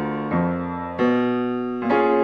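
Piano playing sustained chords, each struck and left ringing as it fades, with a new chord about every three-quarters of a second. The passage leads into the key of F-sharp.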